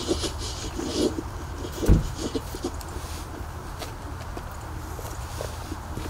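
Steady low outdoor rumble with scattered light knocks and rustles, and one louder thump about two seconds in.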